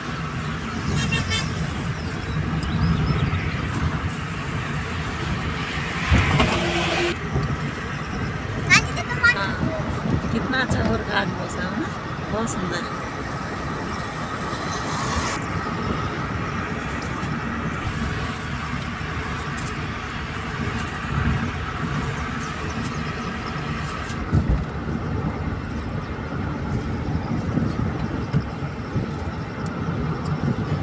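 Steady road and engine noise inside a car driving at highway speed.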